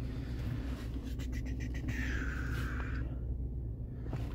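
Ford Ranger pickup idling, a steady low hum heard from inside the cab, with a few light clicks about a second in and a short faint whine around two seconds.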